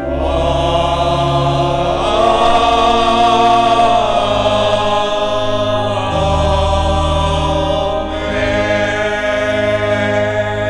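A sung Amen: voices in slow chant-like style holding long chords that change about every two seconds, over a steady low accompaniment.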